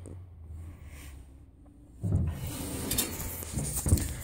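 A low steady hum at first, then from about halfway in the rustling and rubbing of a hand-held camera being moved about, with a few light knocks.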